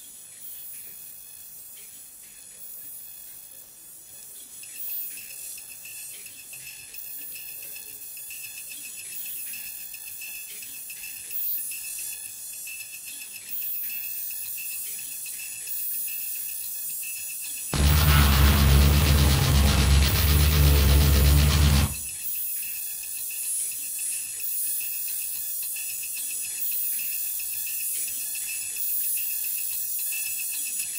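Experimental turntable music made with vinyl records: a quiet texture of hiss and crackle with scattered ticks that slowly builds. About two-thirds of the way through, a loud, dense burst with heavy bass comes in, lasts about four seconds and cuts off suddenly, and then the quieter crackling texture returns.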